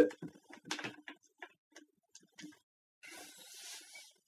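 Faint scattered taps and knocks, then a short rustle about three seconds in: handling noise from a person shifting in a chair with an acoustic guitar.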